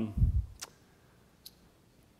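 The end of a man's spoken 'um', then a low thump on the podium microphone and a sharp click just after it, a fainter click about a second later, then near silence in the room.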